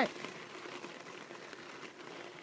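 Faint crackly rolling noise with small scattered ticks and rattles from a bicycle riding over a bumpy surface.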